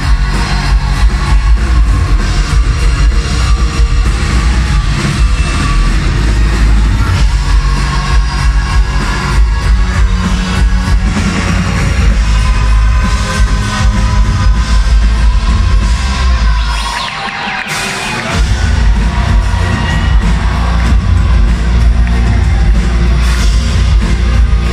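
Electro-rock band playing live and loud through a concert PA, with a heavy, pounding low end. About two-thirds of the way in, the bass drops out for a second or so, then the full band comes back in.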